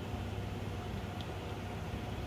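Steady, fairly faint low hum of background machinery with a thin steady tone above it, and a single faint tick just past a second in.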